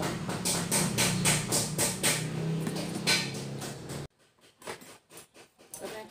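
Regular knocking, about three knocks a second, over a steady low hum; it cuts off abruptly about four seconds in, leaving only a few faint clicks.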